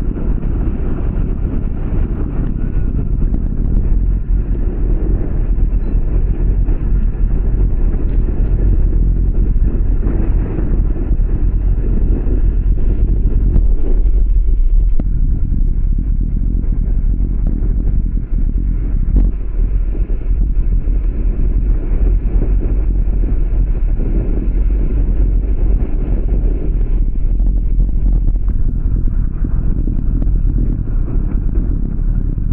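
Wind buffeting the microphone of a bicycle-mounted camera at race speed, heard as a steady low rumble, with the tyres rolling on wet road underneath.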